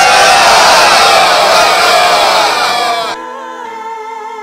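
A large crowd shouting and cheering together, many voices at once. It cuts off suddenly about three seconds in, and soft music with held notes follows.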